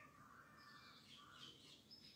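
Near silence in a pause between speech, with faint distant bird chirps.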